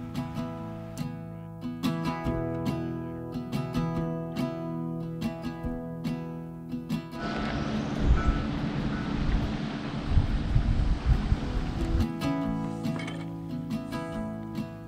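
Background music for about the first half. It then gives way to several seconds of wind buffeting the microphone, with a buoy bell ringing faintly from out on the lake. The music returns near the end.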